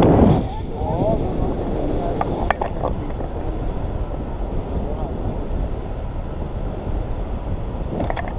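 Wind rushing steadily over a camera microphone carried through the air by a tandem paraglider in flight, with a few faint clicks about two and a half seconds in.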